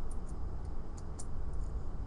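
A few light metallic ticks and clicks as the metal fish-shaped Chinese puzzle lock and its locking bar are handled and fitted back together, over a steady low rumble.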